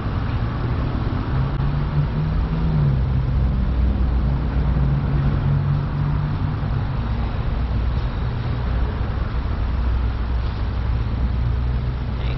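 Car engine running steadily in a drive-thru line, heard from inside the cabin, its pitch rising briefly about two to three seconds in.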